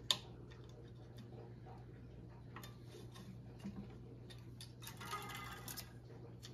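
Clicks and light ticks from hands working tennis string on a racquet stringing machine: a sharp click at the start, scattered ticks, and a short rasp about five seconds in, over a steady low hum.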